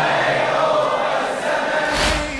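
An Arabic mourning song with a choir of voices holding a long note between the lead singer's lines, ending with a low thump.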